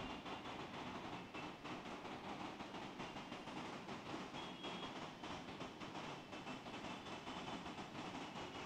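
Faint, steady background room noise with a fine crackle running through it, no voice.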